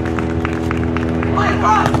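Scattered hand claps from a beach volleyball crowd over a steady low hum, with a spectator's voice near the end.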